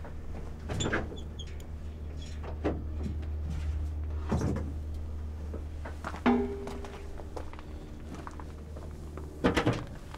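A large sheet-metal engine access door on a heavy truck being unlatched and swung open: several knocks and clunks from the latch, hinges and panel, the loudest cluster near the end, with a brief squeak about six seconds in. A steady low hum runs underneath.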